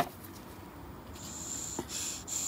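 Air hissing through a small-engine carburetor's passages, starting a little past a second in, with a thin high whistle; the passage is clear and passes air freely. A sharp click at the very start.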